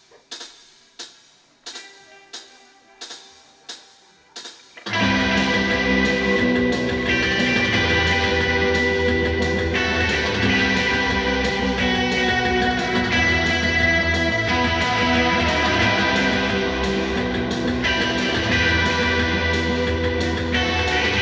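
A live indie rock band. At first there are only light, evenly spaced percussion ticks, about three every two seconds, with faint held guitar notes. About five seconds in, the full band comes in loud together with electric guitars, bass guitar and drum kit, and plays on steadily.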